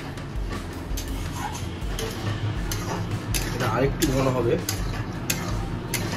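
Metal spatula stirring a thick white sauce in an aluminium kadai, scraping and clicking irregularly against the pan, over a steady low hum.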